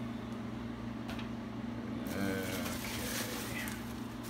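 Steady low hum in the room, joined about halfway through by rustling as parts and a plastic bag are handled, with a brief murmur of voice.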